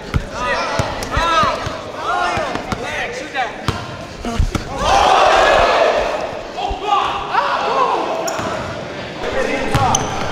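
A basketball dribbled on a gym floor in repeated bounces, with sneakers squeaking in short chirps as players cut and move. Voices from the crowd and players swell up about five seconds in.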